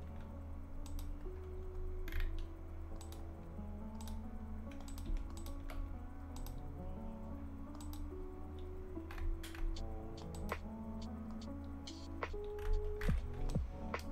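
Computer keyboard keys clicked now and then while the software is operated, over soft background music of slow, held notes.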